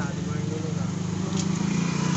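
A steady low engine-like hum running evenly throughout, with faint voices over it.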